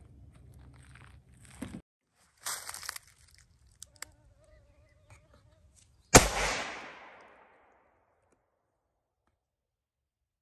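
A single shot from a Remington 700 AAC-SD bolt-action rifle in .308 Winchester fitted with a muzzle brake, about six seconds in: one sharp, loud report that dies away over about a second.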